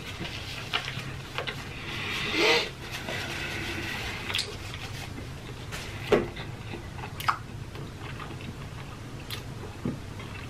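Close-miked chewing of food, with scattered small wet mouth clicks and a short louder swell about two and a half seconds in, over a faint steady low hum.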